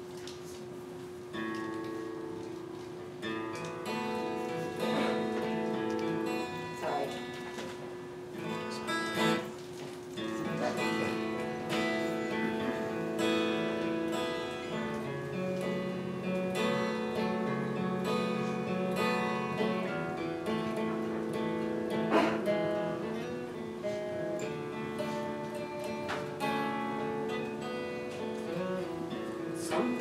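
Solo acoustic guitar playing a song's instrumental introduction: picked, ringing notes with a few strummed chords.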